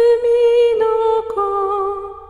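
A woman humming a slow Japanese lullaby melody. She holds one steady note, steps down to a lower note a little past halfway, and the sound fades near the end.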